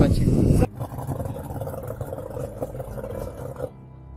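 Loud wind and rubbing noise on the microphone aboard a speedboat, cut off abruptly under a second in. A much quieter open-air background with faint voices follows and stops suddenly near the end.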